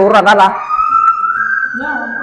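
A high, thin whistling tone that glides slowly upward in pitch for about a second and a half, coming in just after a short burst of speech.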